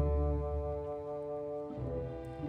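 Orchestral music: a sustained chord with a strong low note, held until near the end, when it moves to a new chord.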